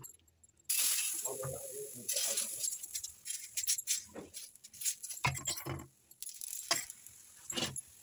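A steel spoon clinks and scrapes on an iron tawa, spreading besan chilla batter, starting just under a second in with repeated sharp clinks and a few duller knocks. A steady hiss of batter sizzling on the hot griddle runs underneath.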